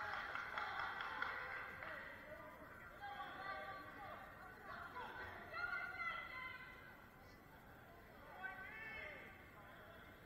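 Faint, distant voices of coaches and spectators calling out and chattering in a large gym hall, with no close speech.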